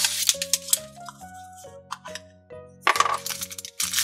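Background music with steady held notes, over the crinkling and crackling of a plastic blind-capsule wrapper being peeled and the capsule opened, in a short burst at the start and again about three seconds in.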